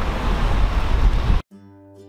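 Outdoor wind noise rumbling on the microphone with surf behind it, cut off abruptly about one and a half seconds in. Quiet plucked-string background music with held notes then begins.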